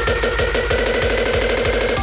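Hardcore techno build-up: a drum roll that speeds up, with a steady heavy bass and a synth line slowly rising in pitch.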